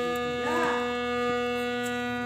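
Harmonium holding a steady sustained chord, its reed tones unchanging, with a brief faint voice about half a second in.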